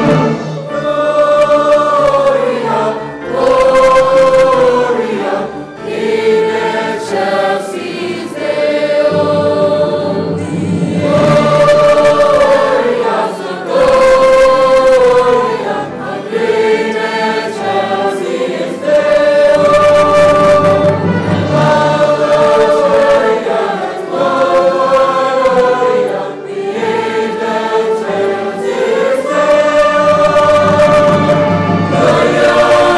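A large mixed choir singing with orchestral accompaniment, in long held phrases of a few seconds each.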